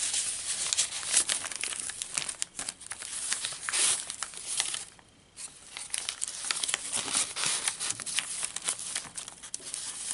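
Paper pages and tucked paper pieces of a handmade junk journal rustling and crinkling as they are handled and turned, a stream of quick crackles with a brief lull about halfway.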